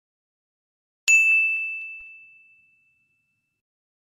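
A single bell-like ding: one sharp strike about a second in, leaving one clear high tone that rings and fades away over about a second and a half.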